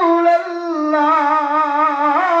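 A man's voice singing a devotional salutation chant into a handheld microphone, holding long notes that waver and slide from one pitch to the next.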